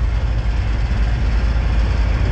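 Steady low rumble with a hiss over it on a car ferry's vehicle deck, the drone of the ship's engines and machinery.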